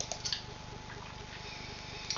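A couple of short computer-mouse clicks right at the start, then quiet room tone with a faint low hum.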